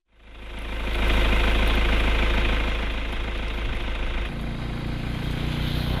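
A motor running steadily with a low rumble. It fades in over the first second and its tone shifts about four seconds in.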